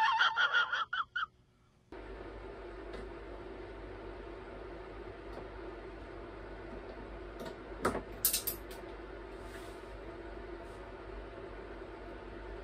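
A short burst of a man's voice from an inserted film clip, then a steady low room hum with a few sharp clicks and knocks of hands working the stiff fuel tap on a pit bike about eight seconds in.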